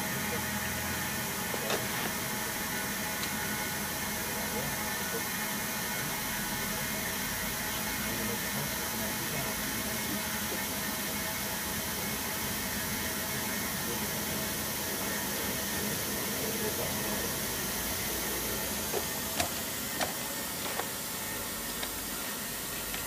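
Steady hiss of compressed air flowing through a refill hose into an MDI air car's tank, with a steady low hum beneath it. A few faint clicks come near the end.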